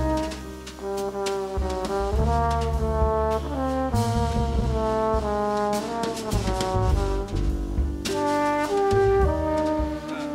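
A live jazz quartet: a flugelhorn plays a melody of held notes over piano, upright bass and a drum kit with frequent cymbal strikes.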